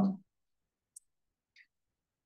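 A voice trailing off at the end of an 'um', then near silence broken by two faint short clicks.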